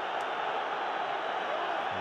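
Football stadium crowd noise: a steady wash of many voices, with no single sound standing out.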